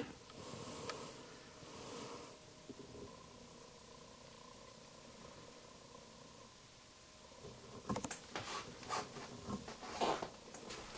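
Faint handling noises around a sewing machine being threaded: soft rustling in the first couple of seconds, then a run of small clicks and taps from about eight seconds in, over a faint steady hum.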